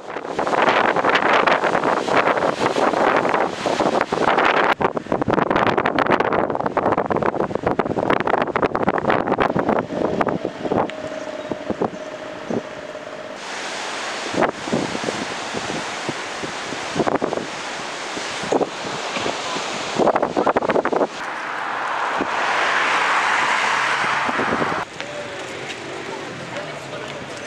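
Strong wind buffeting the camera microphone, with sea waves breaking on the shore. The noise changes abruptly several times where the shots change.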